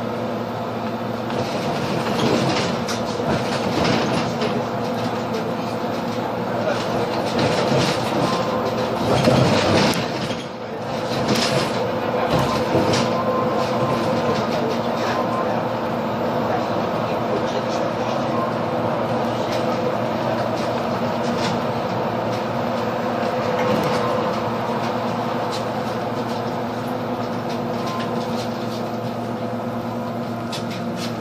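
Solaris Urbino 18 III Hybrid articulated bus on the move, heard from inside the cabin: a steady drivetrain hum and whine over road noise, with a brief dip in level about ten seconds in.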